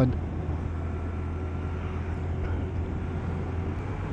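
Honda Monkey 125's single-cylinder four-stroke engine running steadily at cruising speed, mixed with wind and road noise from riding.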